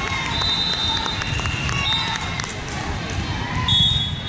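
Volleyball gym during a rally: crowd chatter and shouts echoing in the hall, short high squeaks of sneakers on the hardwood court, and a few sharp slaps of the ball. The loudest squeak comes near the end.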